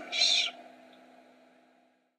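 A man's voice finishes its last word with a short hissing 's' in the first half-second. Then comes near silence, with only a faint steady low hum.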